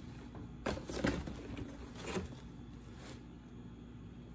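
Soft rustling and crackling of rose stems, leaves and petals being handled, in about four short bursts over a faint steady hum.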